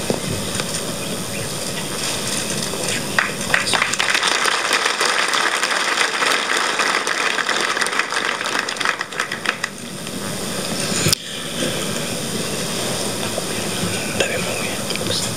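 Audience applauding steadily, loudest in the middle and easing a little before a sharp click near the end.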